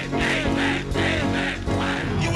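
Live church music over a loud sound system, held low chords under it, with rough, raised voices coming in short repeated bursts over the top.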